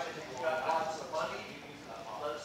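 Indistinct talking in a room, quieter than the presenter's later speech and not clear enough to make out words.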